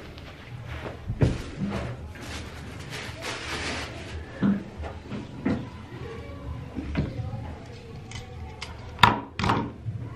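Basketball shorts being unfolded and laid out on a tabletop: fabric rustling, with several sharp knocks and taps against the table. The loudest come about a second in and near the end.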